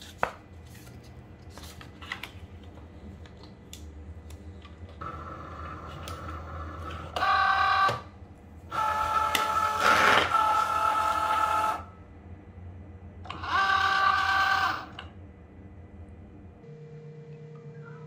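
Cricut Joy cutting machine's small motors whirring as it draws in the loaded sheet of smart vinyl. The whine comes in four runs of one to three seconds each, the longest from about nine to twelve seconds in, after a few light clicks of the sheet being fed in by hand.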